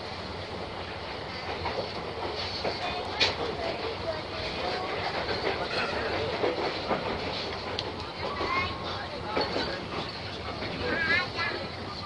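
Passenger train carriage running along the track, heard from inside the carriage, with a few sharp clicks from the wheels and voices of people on a station platform.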